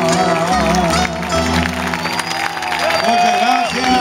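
Several acoustic guitars strumming the closing chords of a Cuyo folk song. Voices call out near the end.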